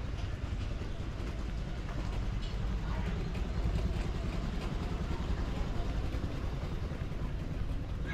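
A vehicle engine running, heard as a steady low rumble.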